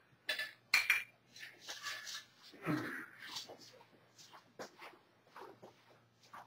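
Lead weights knocking and clinking against each other as they are lifted and set down, a string of irregular knocks, the loudest within the first second.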